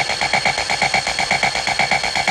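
Electronic dance track in a stripped-down passage: a rapid, alarm-like synth beep pulsing about ten times a second on two pitches, with no bass drum under it.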